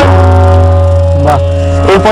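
Tabla pair: a final stroke on the bass and treble drums rings on as one sustained pitched tone with a deep low boom, held nearly two seconds before it stops. A short rising sound cuts in about a second and a half in.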